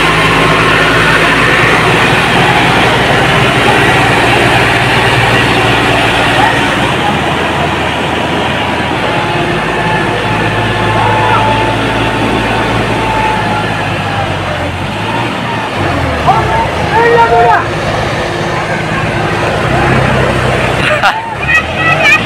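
John Deere 5405 tractor's diesel engine running loudly and steadily, with people shouting over it near the end.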